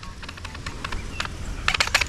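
Fishing reel clicking while a big fish is being played: a few scattered clicks, then a quick irregular run of clicks near the end, over a low wind rumble.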